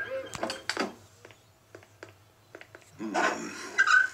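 Cartoon sound effect of a small car engine running badly: irregular knocks and pops that die away to faint ticks, with louder sound returning about three seconds in. It is the sign of the car breaking down.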